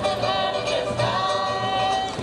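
Music in which several voices sing long held notes together, like a choir.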